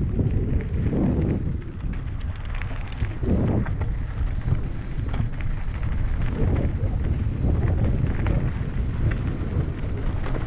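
Wind buffeting the camera microphone, with a steady low rumble and scattered rattling clicks from a mountain bike rolling over a dirt singletrack.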